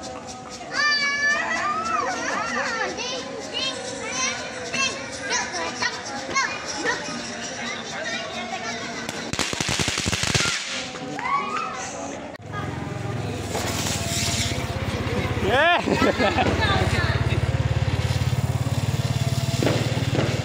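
Small ground fountain firework burning and spraying sparks, with a short, loud hissing burst about ten seconds in. Children's voices and high rising and falling tones sound over it, and a steady low hum joins about halfway.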